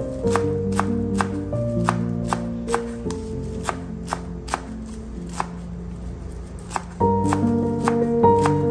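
Kitchen knife chopping a bunch of fresh green herbs on a wooden cutting board, sharp strikes at about two a second, over background music.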